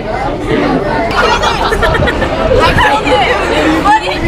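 Several people chattering and talking over one another, indistinct, with no single clear voice.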